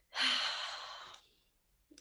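A woman's long sigh, a breathy exhale that fades out after about a second, followed by a short silence.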